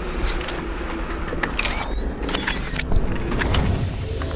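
Intro sound effects for a channel logo sting: sharp mechanical clicks and hits over a low rumble, with a rising whistle a little after two seconds in.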